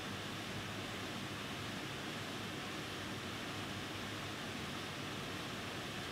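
Faint, steady hiss of room noise with no distinct events.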